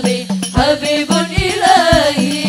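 A women's vocal group singing sholawat, an Islamic devotional song, into microphones in a wavering, ornamented melody, over steady low drum beats about twice a second.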